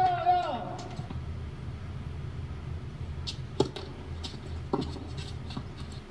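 A steady low hum with two sharp clicks about a second apart, and a few fainter ticks around them.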